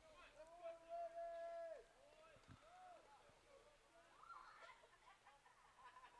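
Near silence with faint, distant shouted calls from football players at the line of scrimmage. One drawn-out call comes about a second in, with shorter calls after it.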